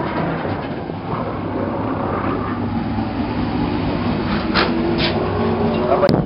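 Stock car engines running steadily at low speed as the cars roll slowly along pit road. Two short sharp sounds come near the end.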